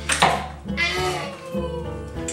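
A toddler's high-pitched vocalisation, a drawn-out squeal that rises and falls, just after a short sharp noisy burst, over guitar background music.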